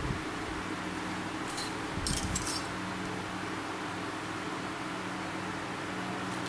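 A steady machine hum, like a running fan, with a few light metallic clicks and rattles about one and a half to two and a half seconds in, as metal hand tools and a tape measure are handled.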